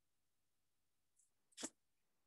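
Near silence: faint room tone, with one brief soft click about one and a half seconds in.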